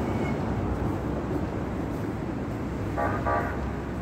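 Steady city traffic rumble, with a car horn giving two short toots in quick succession about three seconds in.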